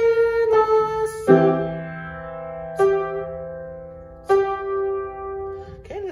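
Yamaha upright piano played slowly with both hands: a low note held under higher notes, with about five separate attacks. Each chord or note is left ringing and fades, and the last is held longest.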